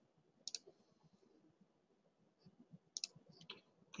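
Computer mouse clicks: one sharp click about half a second in, then a few more close together near the end. Otherwise near silence.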